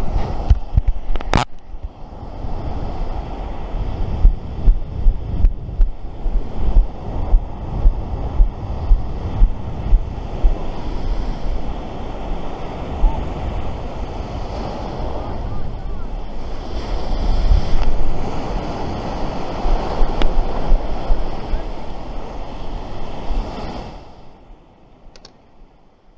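Strong wind buffeting the microphone over surf washing up the beach, with a run of regular thuds about two a second, in step with barefoot walking, a few seconds in. A sharp click about a second in; the sound cuts off abruptly near the end.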